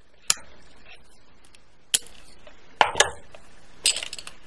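Crimping pliers and beads clicking as a metal crimp bead is squeezed onto beading wire: five sharp, separate clicks, two of them close together about three seconds in.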